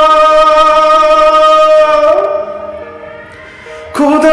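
A man singing a slow ballad over a karaoke backing track, holding one long note that fades out about two seconds in. The quieter accompaniment carries on alone before he comes back in with a new phrase at the very end.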